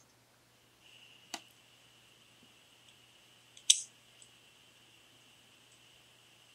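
Scissors snipping wig lace, heard through a laptop's speaker over a video call: a light snip about a second in and a sharper one a little past midway. A faint steady hum runs underneath.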